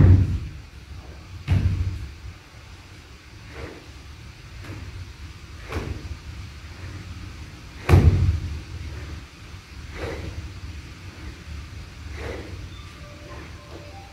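Repeated golf practice swings: a sudden swish or thud about every two seconds, about seven in all. The heaviest thumps come at the very start and about eight seconds in.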